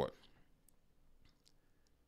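Near silence after speech stops, broken by a few faint, short clicks spread across the pause.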